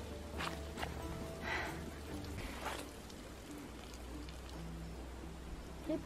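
A cow urinating: a faint, steady stream splashing onto the ground, with soft background music underneath.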